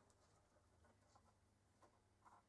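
Near silence with a few faint light ticks of a marker tip touching a polycarbonate sheet.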